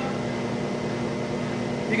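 Web-handling test stand running at high speed: a steady mechanical hum with a few faint steady tones as the web runs over its rollers and through the nip assemblies.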